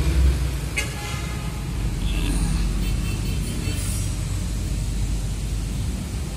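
Steady low engine rumble with an even, droning tone.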